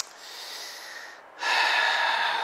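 A man's long, audible breath close to the microphone, starting about a second and a half in, after a short click at the start.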